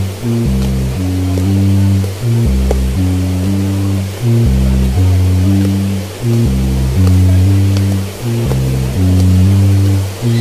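Background music with a deep bass line, its notes changing about every half second in a pattern that repeats every two seconds or so.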